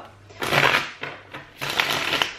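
A deck of tarot cards being shuffled in the hands: two crackling riffles, the first about half a second in and the second near the end, each lasting about half a second.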